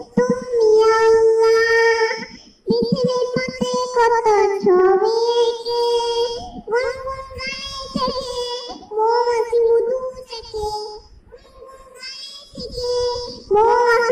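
A young girl singing an Islamic naat (devotional song) solo, in long held notes with short breaks between phrases.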